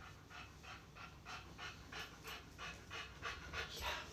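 A dog panting softly and quickly, about four breaths a second, in an even rhythm.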